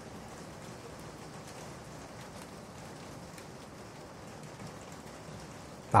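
Steady, even hiss of background noise with no distinct events: the room and recording noise floor heard in a pause between speech.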